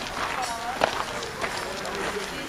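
Indistinct chatter of several people talking at a distance, with a sharp knock a little under a second in.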